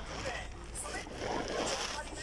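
Indistinct chatter of several voices with plastic crinkling close to the microphone, the crinkling strongest in the second half.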